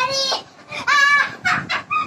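A child's high-pitched, sing-song calls: three short drawn-out cries that bend in pitch, amid laughter.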